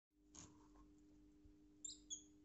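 Near silence with a faint steady low hum; near the end, a brief high squeak from a rosy-faced lovebird.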